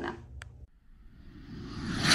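Faint room tone with one small click, a short dropout at an edit, then a rising rush near the end that swells into a whoosh transition sound effect.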